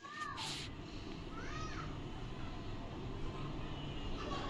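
Two short animal calls, each rising and then falling in pitch, the second about a second and a half after the first, over a steady low background noise.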